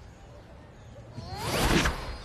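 A whoosh transition sound effect, swelling from about a second in to a peak near the end, with pitches sliding up and down through it.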